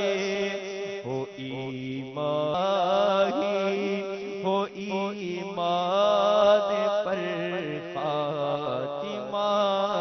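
A man sings an unaccompanied-style Urdu munajat, a devotional supplication, into a microphone in long, ornamented, wavering held notes over a steady low drone.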